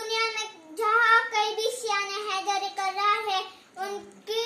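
A young boy chanting a Muharram lament in a sung, melodic voice, unaccompanied, holding and bending long notes with short pauses for breath.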